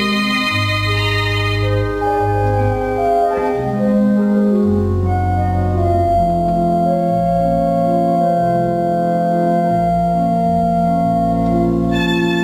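Rushworth & Dreaper pipe organ playing a tune in sustained chords over deep held pedal notes. About two seconds in the bright high overtones drop away and the tone turns mellower.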